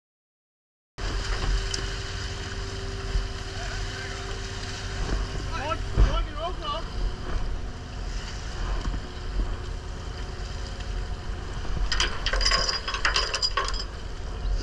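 After about a second of silence, the steady hum of a fishing boat's deck machinery and sloshing water as a Danish seine bag full of fish is hauled alongside. A single sharp knock comes about six seconds in, and a burst of rattling and clicking comes near the end.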